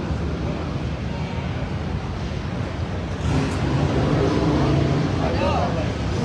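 Indistinct voices of a crowd over a steady low rumble. About three seconds in, a deeper steady hum with a few held tones grows louder beneath it.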